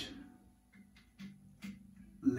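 Electric guitar played through a Fender Hot Rod Deluxe tube combo amp on its clean channel, with the power-tube bias turned all the way cold. A strummed chord dies away, then three softer single notes are picked.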